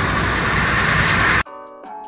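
Steady, even noise of a machining plant's hall, with a low rumble beneath, cut off suddenly about one and a half seconds in. Music with held notes and light ticks follows.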